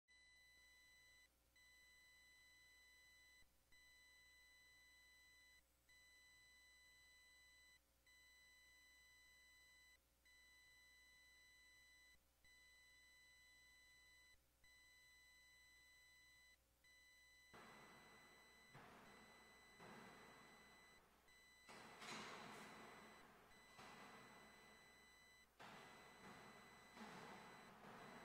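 Faint steady electronic tone, a high whine with overtones, broken by short dropouts about every two seconds. About two-thirds of the way in, a run of louder noise bursts starts, each fading out over about a second.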